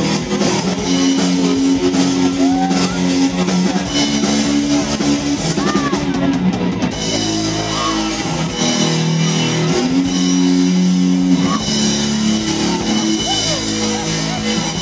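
A live rock worship band playing: electric guitar, bass guitar and drum kit under sustained chords, with voices singing into microphones. The cymbals drop out briefly about halfway through.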